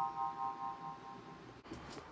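An electronic chime chord of several steady tones rings on and fades out about one and a half seconds in, followed by faint rustling.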